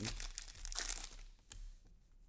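Foil wrapper of a trading card pack crinkling as it is torn open and the cards are pulled out; the crackle is strongest in the first second and fades, with one short sharp crack about one and a half seconds in.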